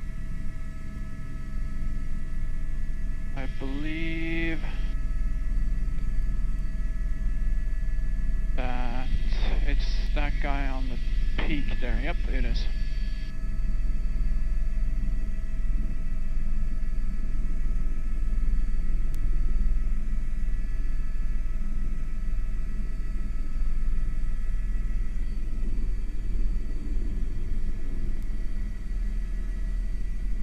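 Airbus H125 single-engine turboshaft helicopter in cruise, heard in the cockpit: a steady low rotor and engine rumble with a thin steady whine over it. Short, narrow-sounding radio voice transmissions break in at about four seconds and again between about nine and thirteen seconds.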